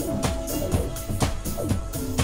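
Live electronic band music: a drum kit keeps a steady beat with strong hits about twice a second under held synthesizer tones.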